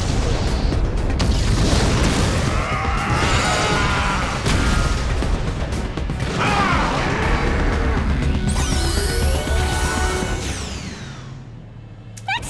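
Cartoon battle sound effects: an energy blast and crashing impacts with a deep rumble, over dramatic background music. It all fades out over the last couple of seconds.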